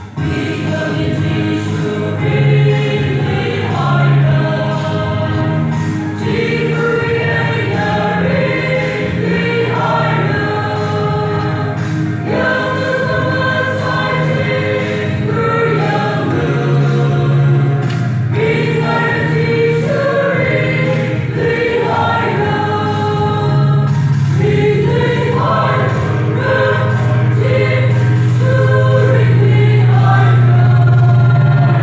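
Church choir of young women singing a gospel song, phrase after phrase with short breaks every few seconds.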